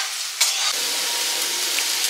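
Sliced vegetables sizzling in a steel wok over a gas flame while being stirred with a metal spatula; the sizzle gets suddenly louder about half a second in.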